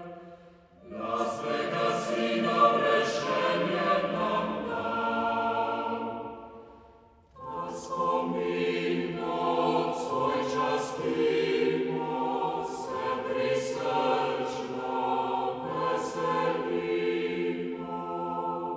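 A chamber choir singing an old Slovene Christmas song in sustained phrases, breaking off briefly just after the start and again about seven seconds in before the next phrase.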